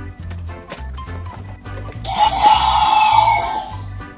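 Background children's music with a steady beat. About two seconds in, a toy Velociraptor Chomp 'N Roar mask's electronic dinosaur roar plays from its speaker for nearly two seconds, much louder than the music.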